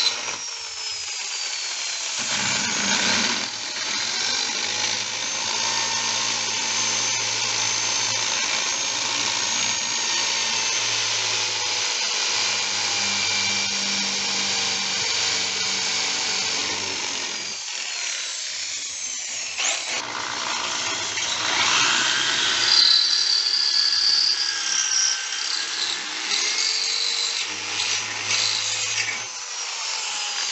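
Electric drill boring holes into the base of a cast heron sculpture, running in long stretches with a few brief stops and changes in pitch as the bit works in and out.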